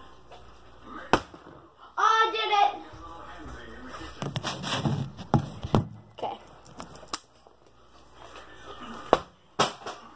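A plastic water bottle, partly filled with water, lands from a flip with a sharp knock about a second in, followed by a short vocal exclamation. After that come rustling and handling noise close to the microphone, and a few more sharp knocks near the end.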